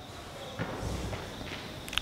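A pause in speech: low room tone with a few faint soft taps or shuffles about half a second, one second and one and a half seconds in.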